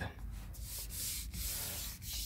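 Close, dry rubbing and scuffing of a hand-held phone being moved about, its microphone brushing against the hand or cabin trim, strongest from about half a second in.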